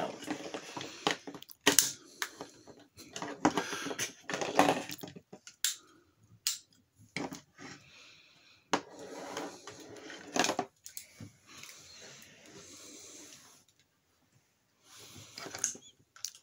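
Hard plastic Megazord toy parts being handled and snapped together: irregular clicks, knocks and rattling, with a brief lull near the end.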